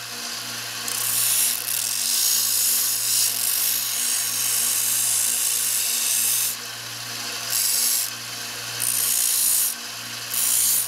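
Small benchtop belt sander running with a steady motor hum while a piece of sheet metal is pressed against the moving belt in passes: a long hissing grind starting about a second in, then two shorter passes near the end with the bare motor hum in the gaps.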